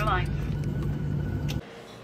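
Steady low drone inside a Boeing 737-800 airliner cabin, cutting off abruptly after about a second and a half.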